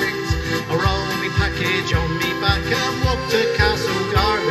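Piano accordion and acoustic guitar playing an instrumental passage of a folk sea song, with a steady bass beat about three times a second.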